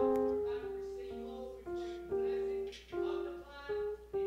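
Slow instrumental music on an electric stage keyboard: a gentle melody of single notes over soft held chords, a new note struck about every half second to second and each fading after it sounds.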